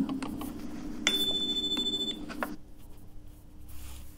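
Exam cue chime: a single steady high electronic beep about a second long, starting about a second in. It signals that the recorded dialogue segment has finished and the candidate must begin interpreting.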